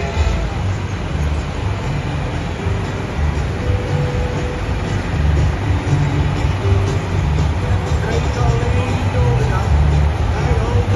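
Renault Ares 935 tractor's diesel engine working hard under heavy load, dragging a 12-tonne weight-transfer sled down a dirt pulling track; a deep, steady rumble that swells slightly in the second half.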